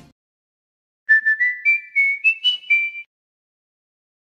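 A short whistle-like jingle of about eight clear high notes, mostly stepping upward in pitch with the last note dropping back, starting about a second in and stopping about two seconds later.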